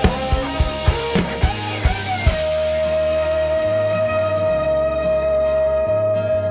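Rock band music with a drum kit playing a run of evenly spaced hits that stops about two seconds in, leaving a long held note over sustained bass.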